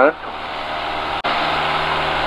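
Van's RV-6A's piston engine and propeller droning steadily in the climb, heard inside the small cockpit, with a sudden momentary dropout about a second in.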